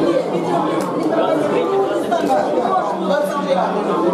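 Several people talking over one another in a room, a steady babble of overlapping voices.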